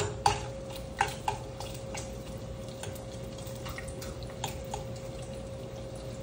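Light clinks and taps of kitchen utensils and dishes being handled, several in the first two seconds and sparser after, over a steady hum.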